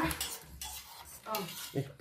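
Metal spoons scraping and clinking against a steel bowl and a plate as people eat noodles, in short irregular clicks, with a few words of speech in the second half.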